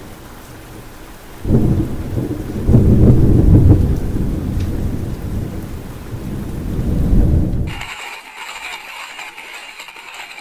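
Rain falling steadily, with a long, deep rumble of thunder that breaks in about a second and a half in, swells twice and dies away near eight seconds. After it the sound thins to a higher, lighter hiss.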